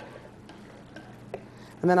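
Faint stirring of diced potatoes into a milky stew with a slotted spatula in a pot, with one light click just over a second in.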